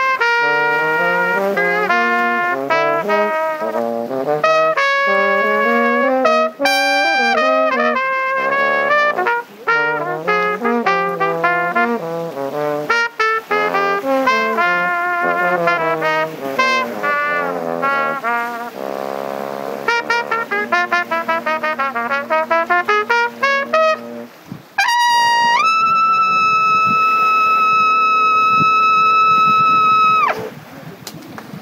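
Trumpet and French horn duet playing a blues tune in quick runs, the horn below the trumpet. Near the end the trumpet slides up into a long high held note over the horn, and both stop together at the close of the piece.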